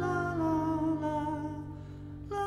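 Acoustic guitar accompaniment under wordless singing: a held vocal note that steps down in pitch a few times and fades near the end.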